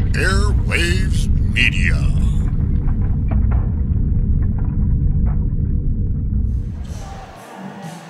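Broadcast bumper music with a heavy bass rumble, with a voice over it for the first couple of seconds. It fades out about seven seconds in, leaving faint gym ambience.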